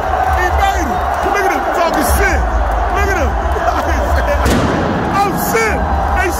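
Loud, steady noise of a packed stadium crowd: thousands of voices shouting at once over a low rumble.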